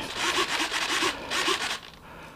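A run of short rubbing, scraping strokes as hands handle the EPP foam wings of an RC plane, dying away near the end.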